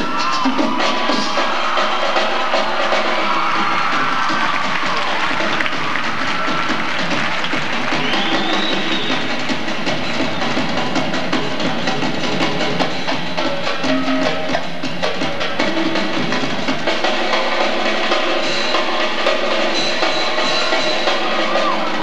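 Live drum kit solo, drums and cymbals played continuously.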